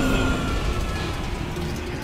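Spaceship landing sound effect from a sci-fi film soundtrack: the rumble of a hard touchdown dying away slowly, with a steady high tone held over it.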